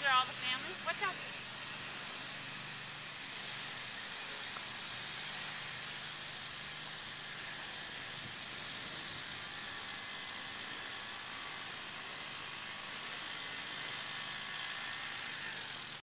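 A voice is heard briefly in the first second, then steady outdoor background noise: an even hiss with no distinct events.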